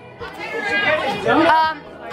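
Speech only: voices talking, with a hesitant "um" near the end.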